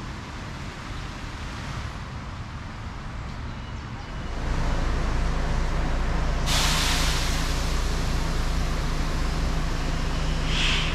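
A steady low machine hum sets in about four seconds in. About two seconds later a loud, steady rush of hissing air joins it and keeps going.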